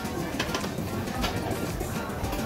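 Restaurant table sounds: a few light clicks of chopsticks and small dishes over steady background music.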